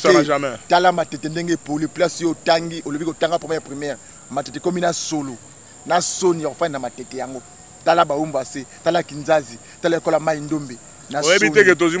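A man talking, with a steady high-pitched chirring of crickets running behind his voice throughout.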